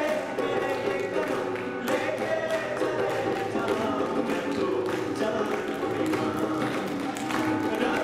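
Live acoustic band playing a Sufi-style Hindi film song: male vocals over strummed acoustic guitar, keyboard and harmonium, with tabla and dholak strikes keeping a steady rhythm.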